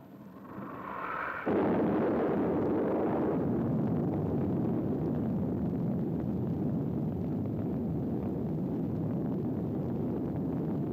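Sound of the Zebra atomic test blast arriving: a sudden loud boom about a second and a half in, followed by a long rolling rumble.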